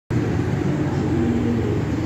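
Steady road traffic noise from a busy city street: a continuous low rumble of vehicles with a faint steady hum.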